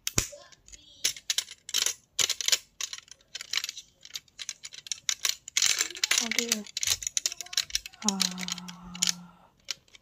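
Plastic electronics-kit pieces being handled and clicked together by their metal press-stud snap connectors on a clear plastic grid board: a run of sharp, irregular clicks and light rattles.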